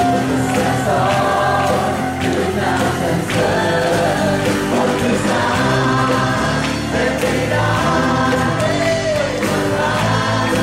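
A live worship song: a man singing lead into a microphone to his acoustic guitar, with other voices singing along and a steady bass underneath.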